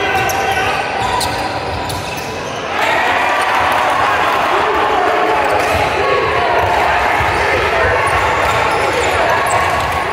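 Basketball bouncing on a hardwood court during play, with players and spectators shouting; the voices get louder about three seconds in.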